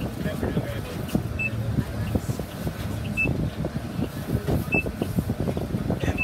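City bus engine idling inside the cabin with a steady low rumble, while a short, high electronic beep sounds about every second and a half to two seconds.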